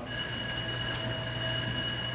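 School bell sounding one steady, ringing tone for about two seconds and then stopping, signalling the end of the class period.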